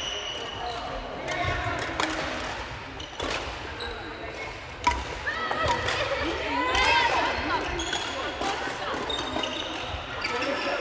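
Badminton rally sounds in a large hall: rackets striking shuttlecocks as sharp, scattered clicks, the loudest about five seconds in, and sneakers squeaking on the wooden floor, with a run of rising and falling squeaks in the middle. Voices of players can be heard underneath, and the hall reverberates.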